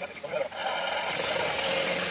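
Soft background music.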